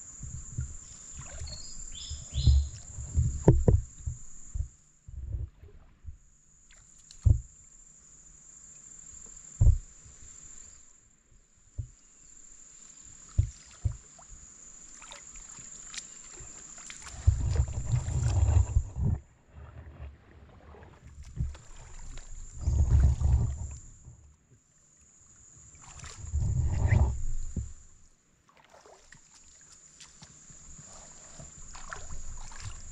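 Water sloshing and sharp knocks around a small boat, in several longer rough bursts in the second half. Behind it runs a steady high-pitched insect trill that breaks off now and then.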